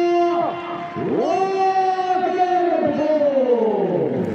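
A man's voice over the stadium loudspeakers drawing out a player's name at a substitution, in two long held notes, the second sliding down at its end.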